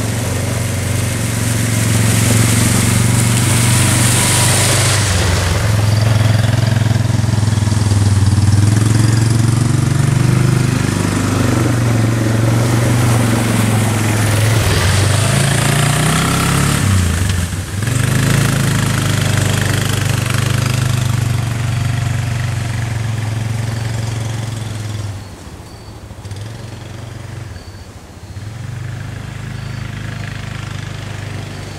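Four-wheeler (ATV) engine running as it rides up the track, passes close, and heads off. The engine note wavers as it goes by just past the middle, and it gets clearly quieter in the last few seconds as it moves away.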